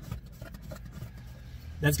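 Faint scattered clicks of a 12 mm wrench working the foot-control pedal's stop bolt, over a steady low hum.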